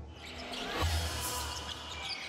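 Sports-broadcast intro sound effect: a deep bass hit with a swish about a second in, its low rumble ringing on afterwards.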